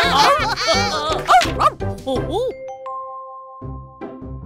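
Several cartoon character voices cheering and whooping together over upbeat children's music with a steady beat. About halfway through, the voices stop and the music goes on with a few held notes.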